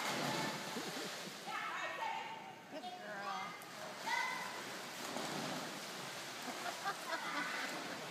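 Swimmers splashing and kicking as they race freestyle down a pool, a steady wash of water noise. Children's voices shout and cheer over it a few times in the first half.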